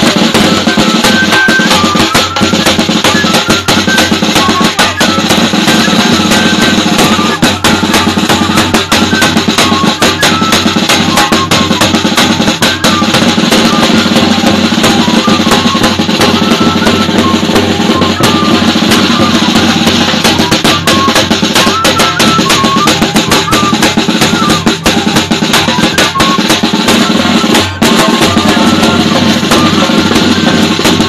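A traditional drum-and-flute ensemble playing: a large bass drum and a snare drum beaten in a steady, dense rhythm under a high flute melody of short notes. The music is loud and unbroken.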